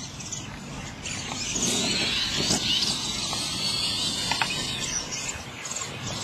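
Radio-controlled monster trucks' electric motors and gears whining at high pitch, the whine wavering up and down with the throttle and loudest through the middle.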